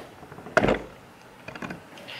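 A single knock about half a second in, then a few light clicks, as a plastic commode bucket and its lid are handled.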